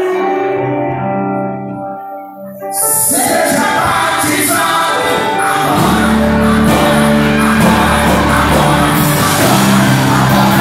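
Live church worship band: a held chord fades away about two seconds in, then the full band with drums and electric guitars comes in loudly, with singing over it. The bass thickens about six seconds in.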